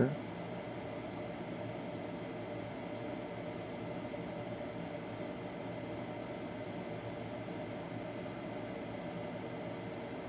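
Steady hum and hiss of room background noise, with faint steady tones and no distinct events.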